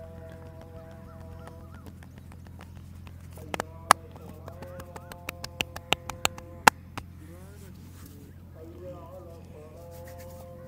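About a dozen sharp hand slaps on a man's head during a massage, coming quicker between about three and a half and seven seconds in, over soft background music with held tones and a steady low hum.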